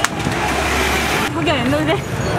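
Street-clash commotion: a sharp knock at the start, about a second of rushing noise over a steady low hum, then a man's voice shouting near the end.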